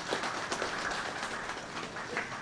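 Audience applauding, slowly dying down.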